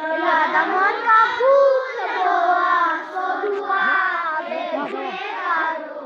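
A group of young schoolchildren singing a prayer together in unison.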